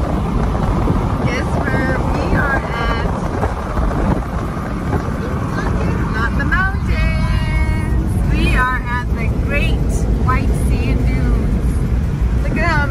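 Steady road and wind noise inside a moving car's cabin, with a voice heard over it at times.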